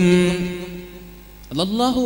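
A man's voice in melodic, chanted delivery, holding one long note that fades slowly, then starting a new rising phrase about one and a half seconds in.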